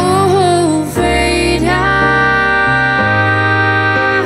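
A woman's singing voice with added harmony voices from a TC-Helicon VoiceLive 2 pedal, over a digital keyboard in a piano sound. A short phrase that wavers in pitch, then a long held note from nearly halfway through.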